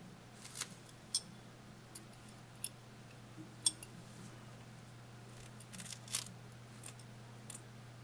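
Faint metallic clicks of a steel latch hook's hinged latch flipping open and shut as it works yarn, around ten of them at irregular intervals, the sharpest about three and a half seconds in.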